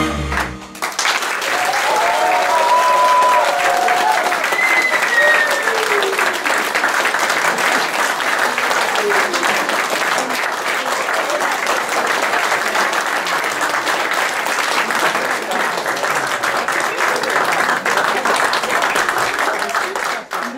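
Audience applauding steadily right after a song ends under a second in, with a few voices calling out in the first seconds.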